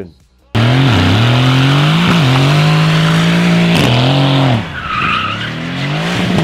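A car engine revving hard over screeching, skidding tyres. The engine starts suddenly about half a second in, and its pitch climbs and drops back several times, with a higher tyre squeal near the end.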